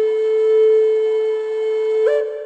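Intro music: a flute holding one long, steady note.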